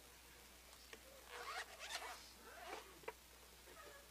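Faint zipper being pulled in a few quick strokes, with a light click near the end.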